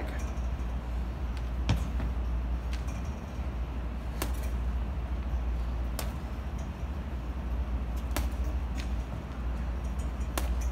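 Boxing gloves striking a hanging heavy punching bag: several separate, irregularly spaced smacks, one to a few seconds apart, over a steady low hum of room noise.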